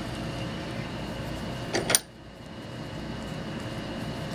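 Steady hum of a dehumidifier running in the background, with one sharp click just before the middle.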